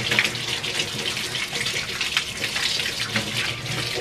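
Tap water running from a wall-mounted faucet and splashing over a cat's wet fur into the sink as the soap is rinsed out, a steady rush with a few sharper splashes.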